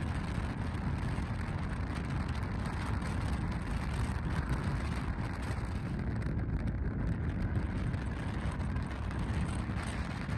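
Steady road noise of a moving car, a low rumble with no distinct events.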